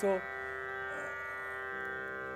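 Steady drone of held tones rich in overtones, the tanpura drone that runs under a Hindustani classical concert, sounding alone after a brief spoken word at the start.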